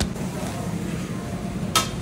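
Knuckles knock once on the hard crust of a freshly baked seeded bagel, then near the end a short crackling as the crisp crust is torn open. A steady low machine hum runs underneath.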